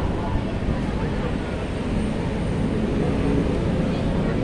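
Steady city road traffic noise, a continuous low rumble of cars and motorcycles, with faint voices mixed in.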